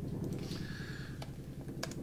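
Typing on a computer keyboard: a handful of sharp key clicks, the clearest near the end, over a steady low hum.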